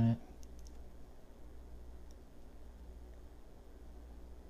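A few faint, short clicks of a paintbrush against a plastic watercolour palette over a low, steady hum.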